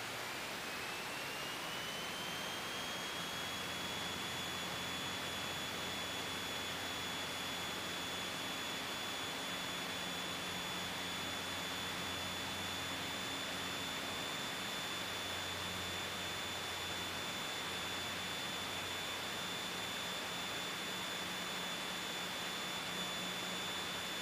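Scottish Aviation Bulldog's piston engine and propeller at full takeoff power, heard from the cockpit as a steady hiss over a low drone. A high whine rises in pitch over the first few seconds and then holds steady.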